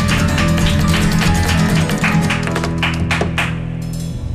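Live acoustic band of strummed acoustic guitars, keyboard and drums playing the closing bars of a song. The strumming and beats stop about three and a half seconds in, leaving the last chord ringing and fading.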